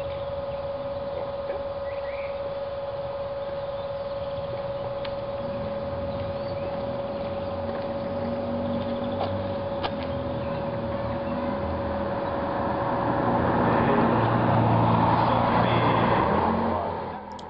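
A car approaching along the street, its engine and tyre noise building over the last few seconds to a peak as it passes.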